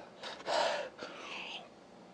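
A man's short, breathy exhale, then faint sounds as he drinks a shot of soju from a small glass.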